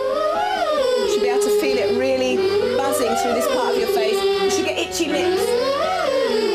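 A group of children's voices doing a vocal warm-up exercise, sliding up and then down in pitch three times over a steady held note.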